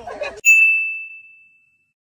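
A single high, bell-like ding sound effect, struck once about half a second in and fading out over about a second.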